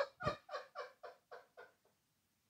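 A person's laugh trailing off in a run of short, fading breathy pulses, about four a second, dying away before the end.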